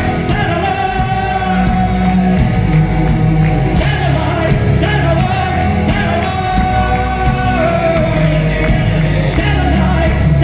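Live rock band playing loud through a concert PA: electric guitars, bass guitar and a drum kit, with a male lead singer.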